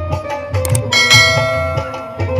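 Devotional instrumental music with a steady drum beat. About a second in, a bell is struck and rings on, fading slowly.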